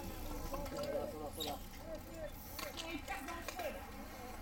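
Faint, indistinct voices of people talking, with low outdoor background noise.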